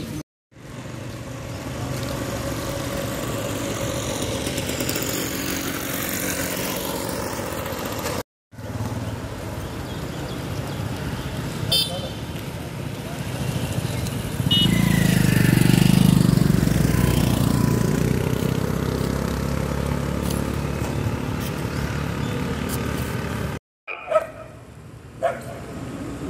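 Street ambience with traffic noise and voices in the background, broken by two brief cuts to silence. A vehicle grows louder and passes about fifteen seconds in.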